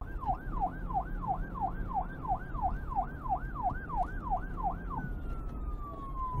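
Siren in a fast yelp, about two and a half rising-and-falling whoops a second, over a steady low rumble. About five seconds in it changes to one long, slowly falling tone.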